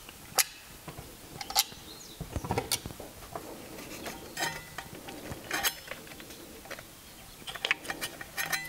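Plastic parts of a car instrument cluster's odometer unit being handled and prised apart: scattered light clicks and knocks, a few seconds apart, as the transparent cover comes off.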